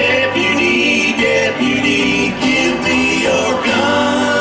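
A live roots-country band playing a song: acoustic guitar, upright bass and drums, with a lead melody line that steps and slides in pitch, bending near the end.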